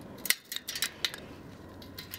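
Plastic bicycle spoke reflector being worked off the wheel's spokes by hand, giving a sharp snap about a third of a second in and then several lighter clicks and rattles over the next second.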